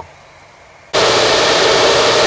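A quiet first second, then from about a second in a loud, steady rush of air from Bitcoin ASIC miner cooling fans running at high speed.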